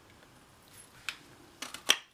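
Handheld craft paper punch (Stampin' Up! Jolly Hat Builder Punch) punching through cardstock: a faint click about a second in, then a quick series of clicks ending in one sharp snap near the end.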